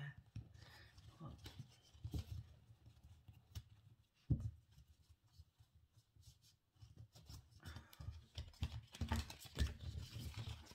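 Heart-shaped oracle cards being shuffled by hand: quiet, irregular card clicks and rustles, with one sharper knock about four seconds in and a pause of a couple of seconds after it before the shuffling picks up again.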